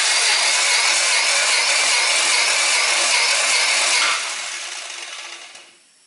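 Toyota 4A-FE 16-valve four-cylinder engine turned over on its starter motor for a compression test on one cylinder, with the engine hot. A loud, steady cranking noise starts suddenly, holds for about four seconds, then fades away over the last two.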